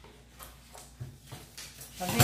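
Scissors cutting through pattern paper in a few faint snips, with a soft thump about a second in as the paper is handled.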